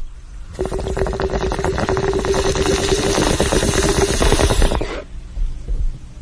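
Bong-hit sound effect: water bubbling rapidly through a water pipe with a steady tone under it. It starts about half a second in and cuts off suddenly about five seconds in.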